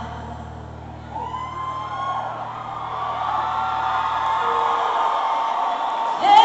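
Arena crowd screaming, many high held cries swelling in from about a second in, over a low sustained chord that fades out near the end.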